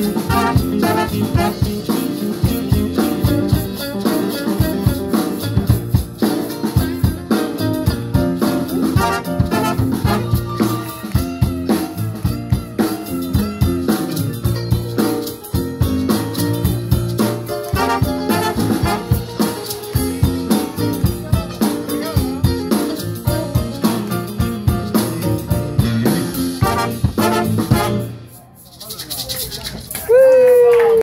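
A live blues band with a horn section of saxophone, trombone and trumpet, over upright bass and drum kit, playing an instrumental passage. The music stops about two seconds before the end.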